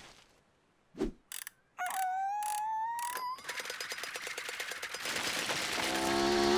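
Cartoon sound effects after the music drops out: a soft thump, a few clicks, and a rising whistle-like tone lasting about a second and a half. Then comes a rapid rattling patter of scampering feet as the character dashes off. Music comes back in near the end.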